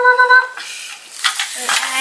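Thin plastic carrier bag rustling and crinkling as it is rummaged through. It opens with a brief, steady, high-pitched tone lasting under a second.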